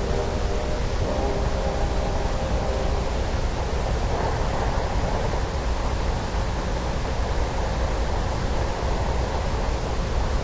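Steady hiss and low hum of an old, worn radio transcription recording, with faint sustained tones fading out in the first second.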